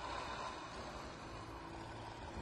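A steady low rumble with a faint hum over it, starting suddenly just after a moment of silence.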